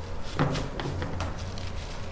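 Scissors picked up from a tabletop, giving one light knock about half a second in and a few fainter clicks after it, over a steady low hum.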